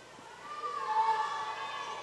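High-pitched voices of spectators shouting and cheering, with long held yells that begin about half a second in and are loudest near the middle.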